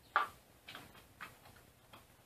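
Four small metal clicks about half a second apart, the first the loudest, from hands fitting hardware to the aluminium frame of a CNC router's Y-axis.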